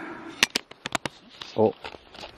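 Handling noise from the camera as a hand reaches over and grabs it: a quick run of five or six sharp clicks and knocks in the first second, then a short spoken "oh".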